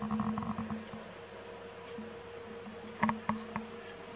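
Low electrical buzz and hum, strongest in the first second, with three short clicks about three seconds in.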